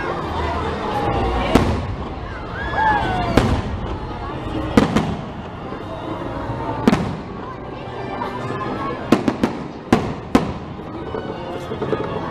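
Aerial fireworks bursting with sharp bangs every second or two, about eight in all, with a quick run of four near the end. Voices and music carry on underneath.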